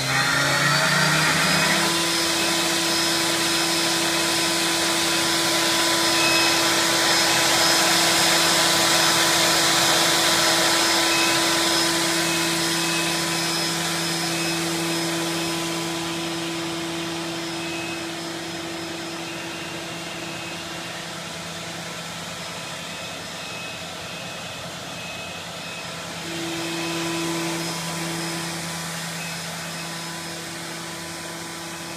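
Spindle of an OKK VM-5 III CNC vertical machining center spinning up over the first two seconds, its pitch rising. It then runs at a steady speed with a constant whine of several tones over a whirring hiss, growing fainter in the second half.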